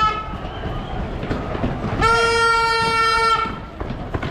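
A loud horn blast on one steady pitch, lasting about a second and a half from about halfway in; the end of an earlier blast cuts off right at the start. Running footsteps on the stone street and crowd noise go on underneath.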